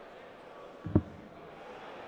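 A steel-tip dart thudding once into the dartboard about a second in, over the steady background noise of the hall.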